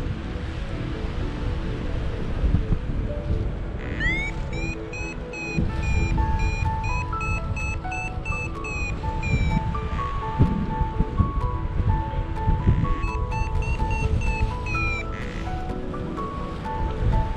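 Paragliding variometer beeping quickly in short climbs, in two spells, the first about four seconds in and the second near the end, its pitch rising as each spell starts. It is signalling lift from small, punchy thermal bumps that sound stronger than they are. Wind on the microphone underneath.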